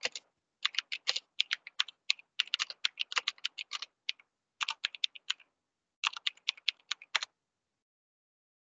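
Typing on a computer keyboard: quick key clicks in three runs, with short pauses about four seconds in and about a second later, stopping shortly before the end.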